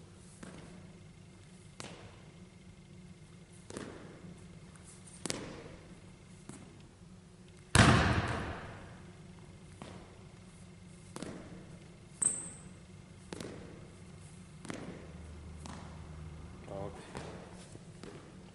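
Basketball bounces and a player's jab steps landing on a hardwood gym floor: single sharp thuds a second or two apart, echoing in the hall, the loudest about eight seconds in. A brief high squeak comes a little after twelve seconds.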